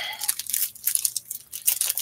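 A foil trading-card pack wrapper being torn open and crinkled by hand, a run of irregular crackles.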